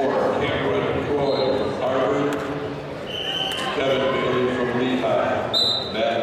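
Indistinct voices of people talking in a large gym, with two short high-pitched squeaks, one about three seconds in and one near the end.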